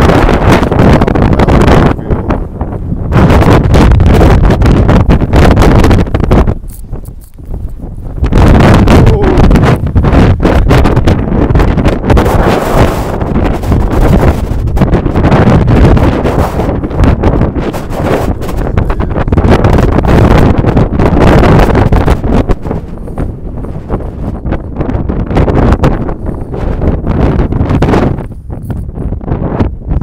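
Strong wind buffeting the microphone in gusts, easing briefly about seven seconds in and again near the end.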